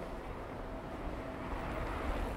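Street ambience dominated by a motor vehicle's engine running, a steady low rumble that grows slightly louder near the end.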